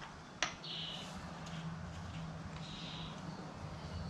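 Faint handling of the oil filter cover and its bolts on an ATV engine case: a sharp metal click about half a second in, a few faint squeaks, over a low steady hum.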